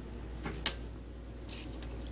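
A few small clicks and taps from handling the plastic and brass parts of a broken-open light switch, with one sharper click about two-thirds of a second in.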